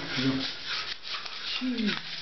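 Scratchy rubbing and rustling noise of a handheld phone being moved about and brushing against clothing, between two short bits of voice.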